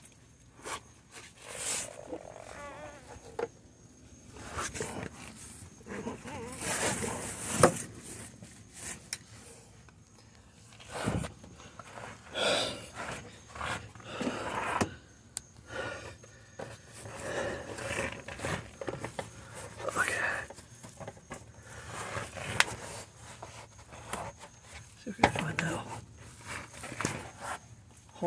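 Irregular scrapes, knocks and rustling from someone moving about and handling things under a car, with a few faint muttered sounds.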